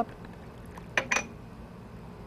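Kitchen utensils knocking against a plastic mixing bowl of vinaigrette: two short clicks about a second in, a fifth of a second apart, over faint room noise.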